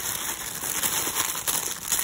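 Clear plastic packaging around a pack of kitchen sponges crinkling as it is handled, a continuous rustle of many small crackles.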